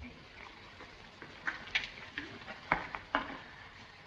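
A few faint, scattered knocks and clicks over the steady hiss of an old film soundtrack, about four of them spread through the middle and later part.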